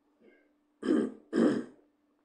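A man clearing his throat twice in quick succession, two short, loud rasping bursts about half a second apart.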